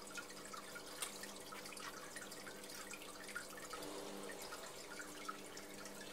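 Water dripping and trickling in an aquarium: a faint, continuous scatter of small plinks and splashes over a low steady hum.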